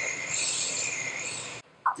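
A steady, high hiss that cuts off suddenly about one and a half seconds in.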